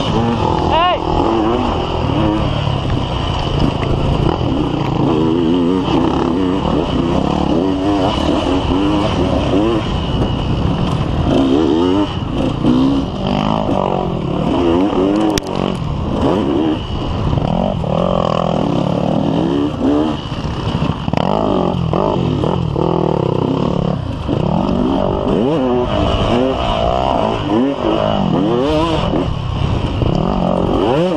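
Enduro dirt bike engine running loud under hard riding, its pitch rising and falling again and again as the throttle is opened and closed over rough trail.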